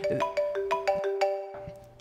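A short melodic phone ringtone: a quick run of pitched, plucked-sounding notes that fades out near the end.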